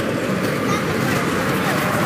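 Steady road and tyre noise inside the cabin of a moving car.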